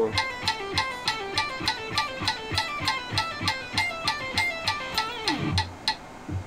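Electric guitar playing a fast legato exercise of pull-offs in quick runs of notes, over a metronome clicking steadily about three times a second at 200 bpm. Both stop near the end.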